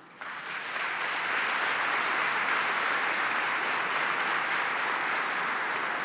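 An audience applauding: many people clapping together. The clapping starts suddenly, builds over about the first second, then holds steady.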